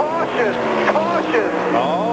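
A NASCAR stock car's V8 engine drones steadily on the TV broadcast, its pitch slowly falling, under commentators' talk.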